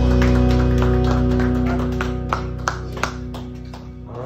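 The closing bars of a country song: a held chord fading out, with single guitar notes plucked at an even pace of about three a second as it dies away.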